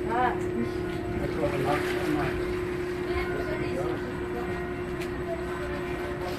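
A ferry's engine running steadily: a constant low hum with a rumble underneath, and voices talking in the background.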